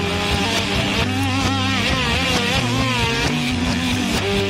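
1960s rock recording playing on without a break, with a sustained lead tone whose pitch bends and wavers up and down from about a second in until past the three-second mark.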